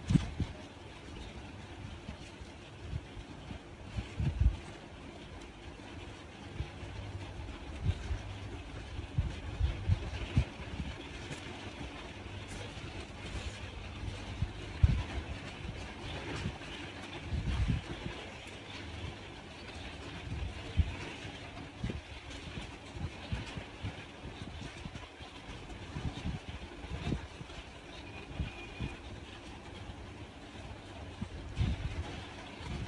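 Crochet handling noise: irregular soft bumps and a few light ticks as hands work a metal hook and yarn against a table, over a steady low background rumble.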